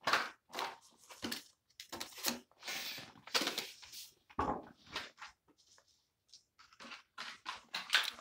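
Toy packaging being torn open and crinkled by hand, in irregular rustling bursts with a short lull past the middle.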